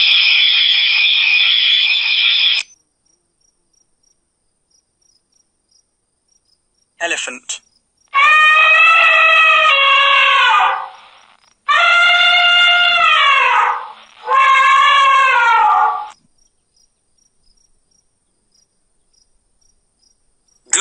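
Animal sounds: a steady, shrill trill for the first two and a half seconds, then three long calls, each two to three seconds, with pitch that falls away at the end.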